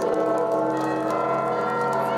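Orthodox church bells ringing together, many overlapping tones with repeated strikes and a deep bell sounding from just after the start.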